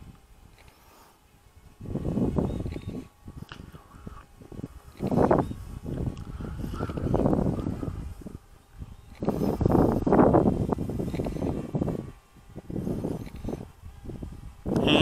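Wind buffeting the microphone in irregular gusts, each swell lasting a second or two with short lulls between.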